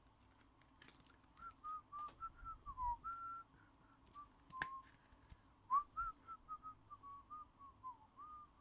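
A person whistling a tune quietly, a run of short notes that wander up and down around one pitch, with a few small clicks of handling.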